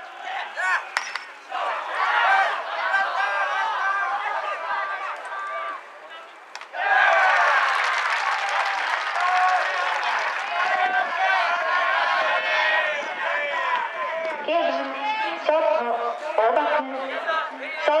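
Baseball crowd shouting and cheering from the stands, with a short sharp crack about a second in; the cheering jumps suddenly louder about seven seconds in and stays loud as the play goes on.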